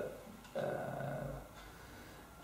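A man's hesitant 'uh', held for about a second, starting about half a second in.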